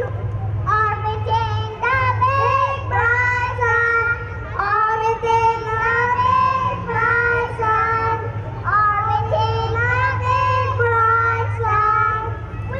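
A child's voice singing a melodic song through a PA system, with notes held and gliding from one pitch to the next. A steady low hum sits underneath.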